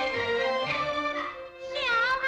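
Traditional Chinese pingju opera accompaniment, an ensemble of held, sustained instrumental notes led by bowed fiddle. Near the end, after a brief lull, a woman's high singing voice enters with wavering, gliding pitch, the start of a sung aria line.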